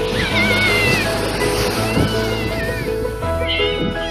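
Background music with steady sustained notes, overlaid by a hiss and by high, wavering, animal-like cries that come in three bouts.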